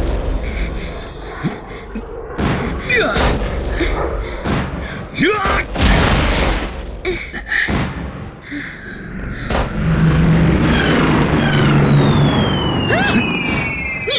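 Air-raid sound effects: a series of bomb explosions, and from about ten seconds in several falling-bomb whistles sliding down in pitch, over a low drone.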